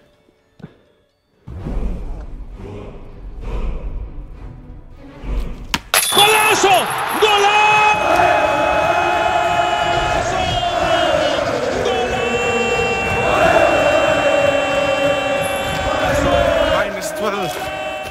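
Background music comes in suddenly about six seconds in and plays on with a sustained melody. Before it there are a few seconds of low rumbling noise.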